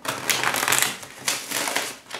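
A tarot deck being shuffled by hand: a rapid crackle of cards flicking against each other, in two quick runs.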